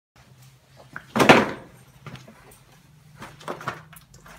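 A loud knock about a second in, then a few fainter knocks and handling noises over a faint steady hum.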